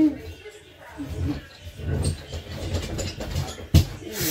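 Low thuds of movement on a floor, then one sharp knock near the end as a foot bangs into something hard.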